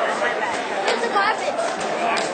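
Crowd of spectators talking and calling out at once, many voices overlapping in a large hall.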